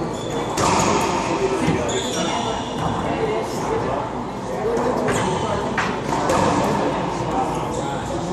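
A racquetball being struck with racquets and hitting the walls: several sharp hits a second or more apart, ringing in the enclosed court, over people's voices.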